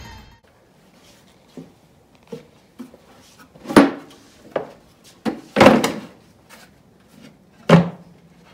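Wooden beehive boxes and boards being handled and set down on a workbench: a series of knocks and thunks of wood on wood, the heaviest about four seconds in, around six seconds, and just before the end.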